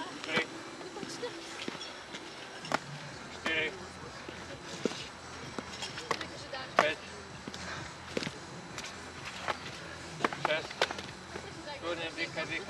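Heavy boots stepping up onto and down off a wooden pallet, with a knock on the wood about every second as a firefighter does weighted step-ups.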